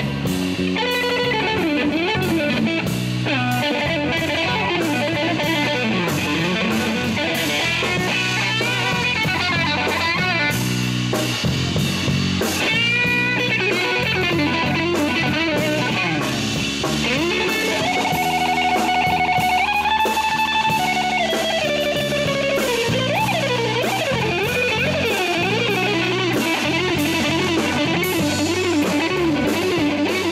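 A live band playing without vocals: a sunburst Stratocaster-style electric guitar plays a lead line full of string bends and vibrato, with one long held, wavering note about two-thirds of the way in, over a drum kit and bass guitar.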